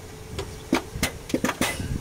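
A quick run of sharp clicks and knocks from the electric turbo actuator as the ignition is switched on, about six in under two seconds. The butterfly linkage it drives hardly moves, because the turbo butterfly is seized.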